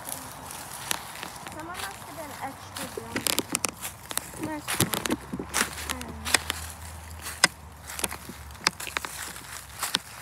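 Footsteps crunching through dry fallen leaves, an irregular run of crackles and snaps, with a voice making brief sounds now and then.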